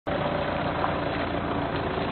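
Steady drone of an engine running, with an even hiss over it.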